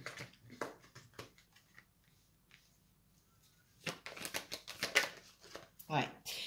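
Tarot cards being handled: a few light clicks of cards against the deck, a short pause, then a quicker run of crisp card clicks as a card is drawn from the deck and laid on the cloth-covered table.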